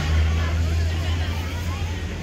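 Low, steady engine rumble, with people talking in the background.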